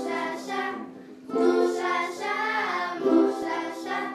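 A group of children singing a Hakka song together, accompanied by ukuleles; the singing dips briefly about a second in before the next phrase.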